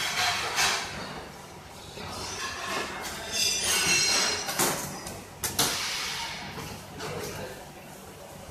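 A knife and a plastic ruler knocking, clinking and scraping on a stainless-steel worktop as dough is cut into strips, in a few separate clatters, over a steady low hum.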